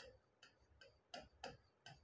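Faint, irregular clicks of a pen tip tapping on an interactive touchscreen display while a word is handwritten on it, about six in two seconds, in an otherwise near-silent room.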